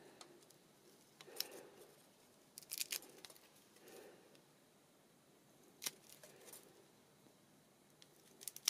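Faint handling of a roll of glue dots: a few small clicks and soft rustles, about a second, three seconds and six seconds in, as dots are taken off the roll for a ribbon bow.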